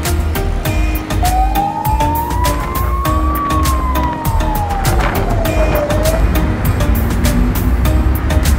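An emergency vehicle's siren gives one slow wail, rising in pitch for about two seconds and then falling for about three, over background music with a steady beat.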